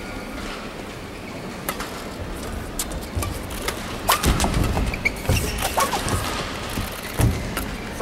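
Badminton rally: sharp racket strikes on the shuttlecock and court shoes squeaking on the court floor, with a jump smash about four seconds in. The sounds echo in a large hall.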